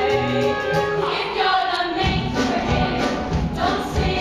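A stage musical's cast singing together in a show tune, with instrumental accompaniment keeping a steady beat.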